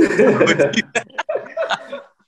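Men talking, with chuckling laughter mixed into the speech, densest in the first half second.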